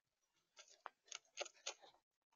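Gray squirrel chewing seeds and nuts right at the microphone: a quick run of sharp little cracks and clicks that starts about half a second in.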